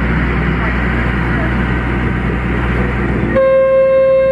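Boat's engine running under steady wind noise. About three and a half seconds in, a horn sounds one long, steady blast.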